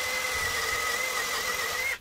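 Skil PWRCore cordless brushless drill spinning a 46 mm wood bit at steady speed under light load as the bit is drawn back out of the hole in the pine, a steady whine that stops just before the end.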